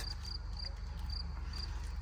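A cricket chirping: short, high chirps repeating irregularly about twice a second, over a steady low hum.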